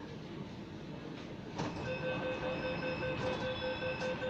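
Delhi Metro train running and braking into a station. About a second and a half in it gets louder, and a steady high squeal with several pitches sets in as the train slows to a stop.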